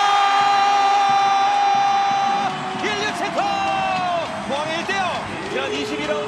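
Football TV commentator's long, drawn-out goal call, held on one note for about two and a half seconds, then a second, shorter held shout that falls away, over a stadium crowd cheering.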